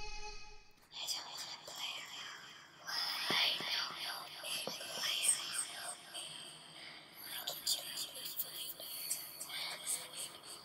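Guitar music cuts out about a second in, then a person whispers softly in short hushed stretches, with a few faint knocks.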